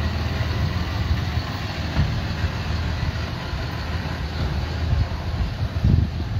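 Flatbed tow truck's engine running as it drives slowly past and pulls away, a steady low rumble.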